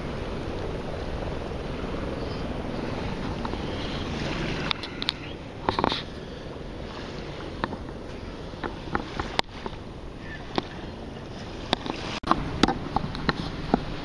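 Steady wind and water noise while wading in shallow water, with scattered short clicks and small splashes from about five seconds in.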